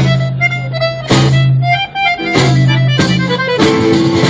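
Live folk band playing an instrumental passage: a button accordion's melody over held bass notes that come and go about once a second, with acoustic guitar strumming beneath; the texture changes near the end.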